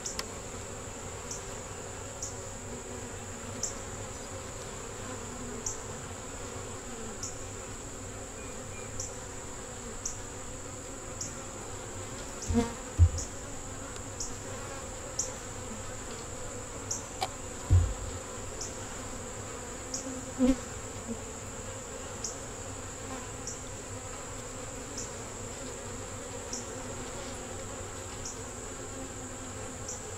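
Honey bees humming steadily over an open hive, with a few dull knocks, the loudest about 13 and 18 seconds in, as the wooden frames are pried and shifted with a hive tool.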